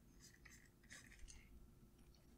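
Faint scratching of a stylus drawing on a pen tablet, in a series of short strokes.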